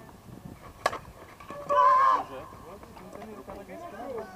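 A softball bat striking the pitched ball with a single sharp crack a little under a second in. About a second later comes a loud, high yell from a person, the loudest sound here, over distant talk.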